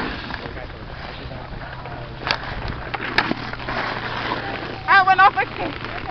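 Two sharp hockey stick clacks on the puck and ice, about two and three seconds in, over steady outdoor wind noise and distant voices. Near the end comes the loudest sound, a high, wavering shout in about three quick pulses.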